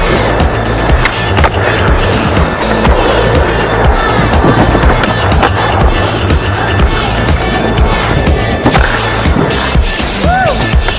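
Skateboard wheels rolling on asphalt, with a few sharp clacks of the board popping and landing flatground tricks, under a song.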